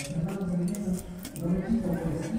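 Indistinct background chatter of several people talking, with a few light clicks.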